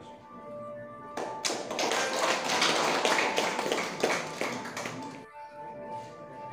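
A small group of people clapping for about four seconds, starting a little over a second in, over steady background music.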